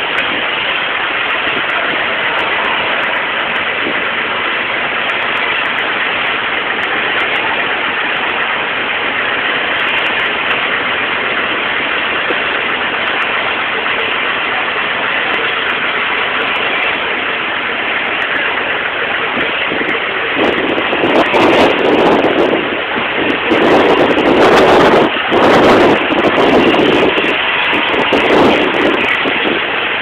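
Steady rushing noise of firefighters' hoses spraying water on a burning car. About twenty seconds in it turns louder and gustier.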